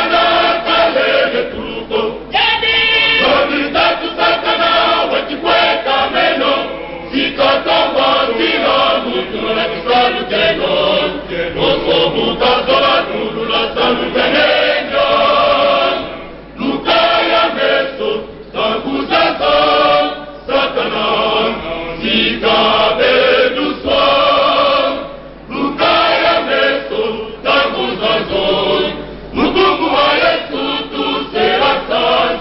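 Male choir singing a gospel song, led by a soloist on a microphone, with a few brief breaks between phrases.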